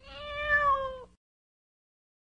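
A cat giving one drawn-out meow, about a second long, that drops in pitch as it ends.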